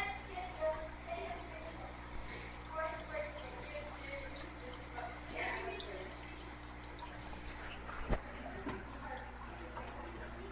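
Steady hum and water trickle of aquarium equipment, with faint voices in the background and a single sharp click about eight seconds in.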